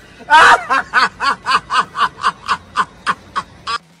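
A man's rapid, high-pitched laughter in a steady run of short bursts, about four a second, opening with a louder, longer burst and stopping just before the end.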